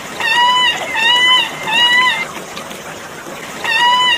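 Chinese giant salamander calling: three short, pitched cries about two-thirds of a second apart, then another run of cries starting near the end, over a steady hiss of water.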